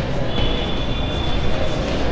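Chalk scratching on a blackboard as a word is written, over a steady noisy background hum. A thin high tone runs from about a third of a second in to the end.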